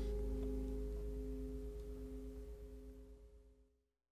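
The final chord of an acoustic country band (guitar, upright bass, fiddle and resophonic guitar) ringing out with a few steady held notes over a low bass. It fades away to silence about three and a half seconds in.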